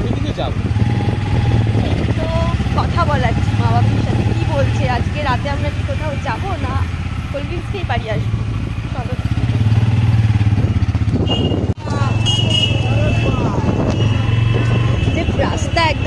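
Motorcycle engine running steadily while riding, heard from the pillion seat, with voices talking over it.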